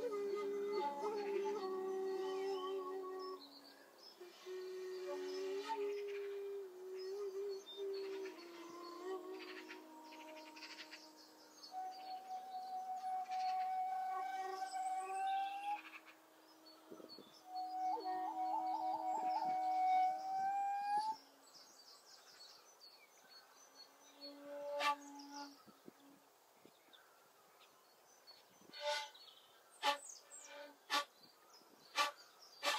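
Two shakuhachi, Japanese bamboo flutes, play long held notes together in a free improvisation, often a low and a higher note at once, some bending slightly in pitch. About two-thirds through the flutes fall away, leaving a quiet background with a few short bird chirps.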